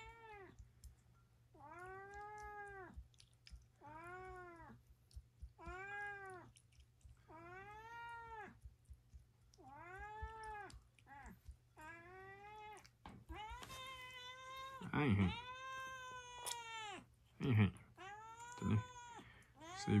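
A domestic cat meowing over and over, about one meow every two seconds, each rising and then falling in pitch; the meows grow louder and longer in the last few seconds.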